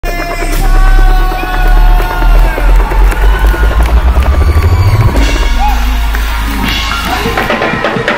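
Hip hop music intro with a heavy bass beat whose hits come faster and faster, building up until about five seconds in, where the bass drops out and lighter sliding tones carry on.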